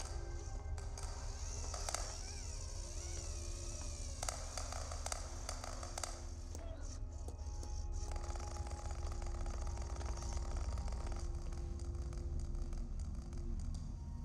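Movie soundtrack: quiet background music over a steady low rumble, with brief wavering sounds a couple of seconds in.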